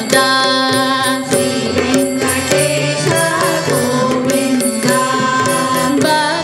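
Hindu devotional bhajan performed live: voices singing a chant-like melody over a sustained harmonium, with dholak and tabla keeping a steady rhythm.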